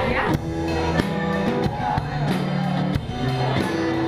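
A small live band starting a song: a strummed acoustic guitar over a drum kit beat, with held low notes that change every half second to a second.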